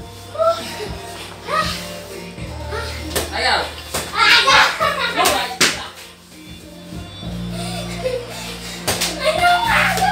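Voices talking and calling out over steady background music, with a few sharp thumps of a ball bouncing on the floor.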